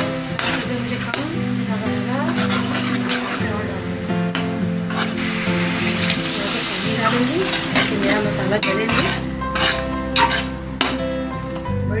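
A spoon stirring sliced chicken sausages sizzling in oil in a metal pot, with clinks against the pot; around the middle, water is poured into the hot oil. Background music with held chords plays underneath.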